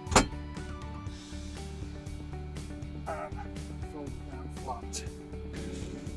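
Background music with a steady low beat, broken about a quarter of a second in by a single sharp clunk as the folding rear seat-bed's backrest catch is released.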